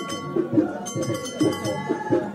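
Moroccan traditional percussion music: metal percussion clanging on every stroke of a fast, even rhythm over drum hits, with a held tone underneath.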